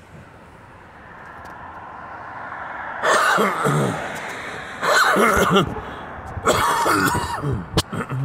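A man coughing hard in three fits, about three, five and six and a half seconds in, with a sharp click near the end.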